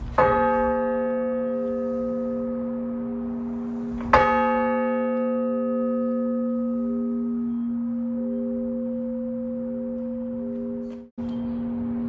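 1860 Meneely church bell (1,218 lb, 42 in) struck by its tolling hammer, the way it is rung for funerals: two strikes about four seconds apart, each left to ring on with a steady low hum and one overtone throbbing as it fades.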